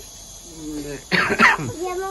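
A person coughs once, a sudden harsh burst about a second in, among low talk.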